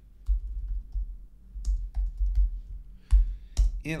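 Typing on a computer keyboard: a run of irregular keystrokes, with one sharper key click a little after three seconds in.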